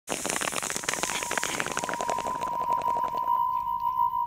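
Crackling static with a steady high-pitched tone running through it; the static fades out about three seconds in, leaving the tone on its own.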